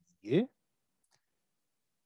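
A brief spoken syllable near the start, then near silence broken by one faint click about a second in.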